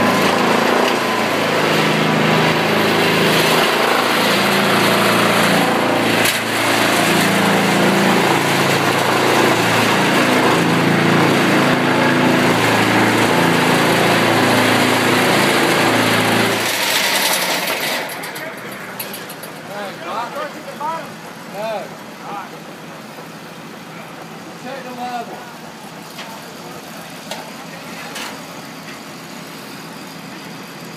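Vibratory pile hammer driving a 37-foot steel sheet pile into silty sand: a loud, steady machine drone that cuts off suddenly about 17 seconds in. After it, an engine runs much more quietly underneath.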